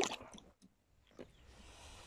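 Handling noises in a plastic fishing kayak: a sharp knock, then a few small clicks, another knock about a second in, and a short hiss near the end.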